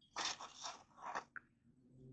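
Faint scraping and rustling in two short spells: a cotton swab and hands working on the steel receiver of a Remington 700 action during cleaning.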